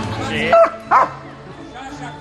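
Police dog barking twice in quick succession, about half a second apart.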